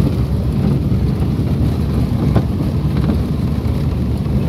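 Steady low rumble of a car being driven, heard from inside the cabin: engine and road noise.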